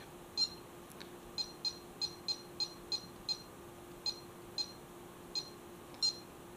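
Bully Dog GT gauge tuner beeping once for each button press while its parameter menu is scrolled: about a dozen short, high-pitched beeps at an uneven pace, some coming in quick succession.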